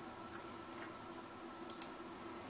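Faint clicks of a computer mouse and laptop keyboard over quiet room tone, two of them close together near the end. A faint steady hum runs underneath.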